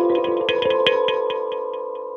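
Lottie Canto Colour Palette electric kalimba: metal tines plucked in a quick run of notes, the last plucks about a second and a half in. Held notes ring on underneath and slowly fade.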